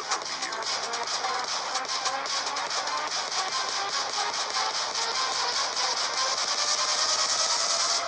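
Instrumental backing music of a rap track with no vocals, swelling gradually louder and then cutting off sharply at the end.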